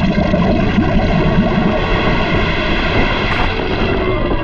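Loud, steady rumbling cartoon sound effect for a stream of molten metal pouring down, with a short hiss about three seconds in.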